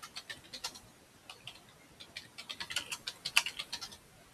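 Typing on a computer keyboard: quick, irregular key clicks, a few scattered keystrokes at first, then a faster run in the second half with one louder keystroke near the end.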